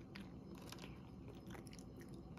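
A cat eating dry kibble, chewing with several faint, irregular crunches.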